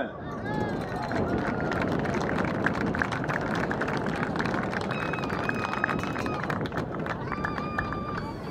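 Crowd in stadium stands clapping steadily for an announced award winner, with a few held calls or shouts about five seconds in and again near the end.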